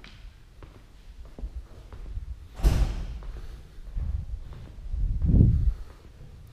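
A sharp bang about two and a half seconds in that rings briefly, then duller low thumps, the loudest near the end, over faint scattered clicks.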